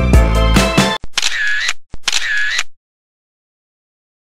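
Background music that cuts off about a second in, followed by two camera-shutter sound effects, one after the other.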